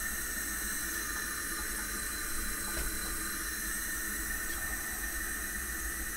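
Bernzomatic Deluxe TX550L camp stove burner, fed from a butane canister, burning with a steady gas hiss.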